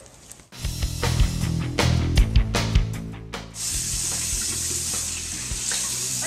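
Background music begins about half a second in. A little past the middle, a bathroom sink faucet starts running, with water splashing as a face is rinsed by hand.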